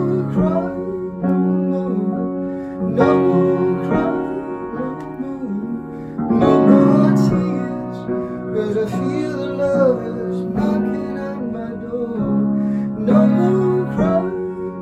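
Upright piano played in slow, sustained chords, struck every second or two, with a man's voice singing a wavering melody over it.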